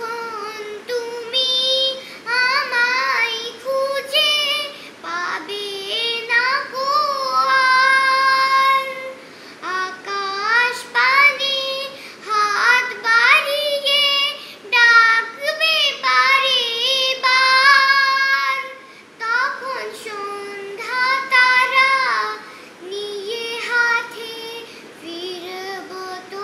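A young girl singing a song unaccompanied, in phrases of long held notes that waver in pitch, with short breaks for breath between them.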